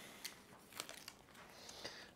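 Faint handling of kinesiology tape: a few light crinkles and clicks as a strip and its paper backing are handled.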